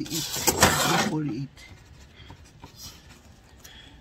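A man's voice for about the first second and a half, then a quiet room with a few faint light clicks.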